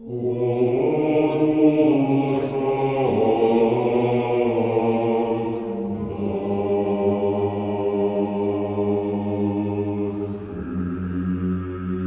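Male choir singing Russian sacred chant a cappella: sustained chords over a held low bass, entering right at the start after a short pause and moving to a new chord every three or four seconds.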